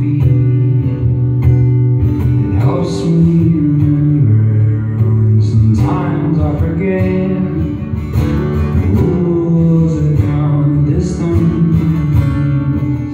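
Acoustic guitar strummed through a live song, its chords changing every second or two, with a man singing over it.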